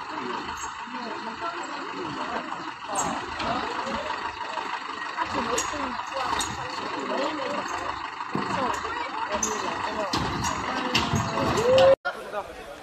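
A Tata SUV's engine running as it creeps down a flight of concrete steps, under the voices of people talking and calling out, with laughter near the end.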